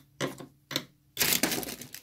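Hands handling circuit boards and ribbon cable on a desk: a few short clacks, then a longer crackling rustle from about a second in.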